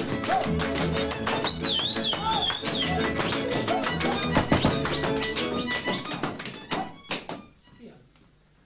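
Lively folk dance music on string instruments with a fast, driving beat of sharp percussive strokes, and dancers stamping along. A high wavering cry rises over it about a second and a half in. The music breaks off about seven seconds in, with a few last strokes before quiet.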